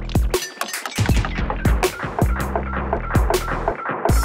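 Electronic percussion loop of kicks and short clicky hits played through an emulated vintage tape echo, each hit followed by evenly spaced delay repeats locked to the tempo.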